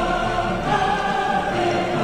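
Background music with sustained choir-like voices holding chords.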